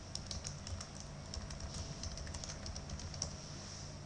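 Typing on a computer keyboard: a run of light key clicks, with one sharper click about three seconds in.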